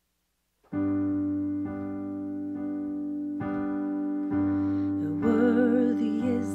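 Piano playing a G major chord, first struck just under a second in and then restruck about once a second. A woman's singing voice with vibrato comes in near the end.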